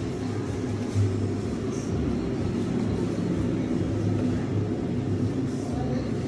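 Steady low hum and rumble, with a slightly louder patch about a second in.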